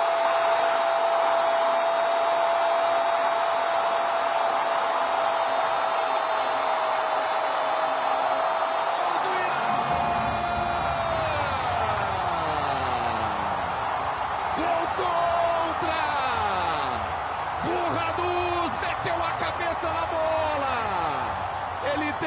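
A Brazilian TV football commentator's drawn-out goal call, 'gol', held on one steady pitch for about ten seconds. It then breaks into a series of shouts that slide down in pitch.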